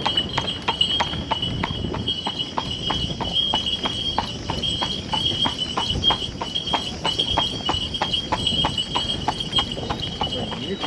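Hooves of a carriage horse clip-clopping on an asphalt road at about four strikes a second, with a steady high-pitched tone behind them.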